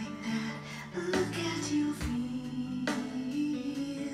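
A woman singing a gentle children's song over a backing track with guitar and a steady beat.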